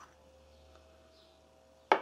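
A small metal sediment bowl taken off a carburetor is set down on a wooden workbench, giving one sharp click near the end, after a quiet stretch.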